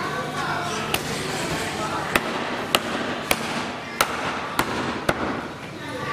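Butcher's cleaver chopping bone-in mutton on a round wooden chopping block: seven sharp strikes, roughly one every half second, starting about a second in.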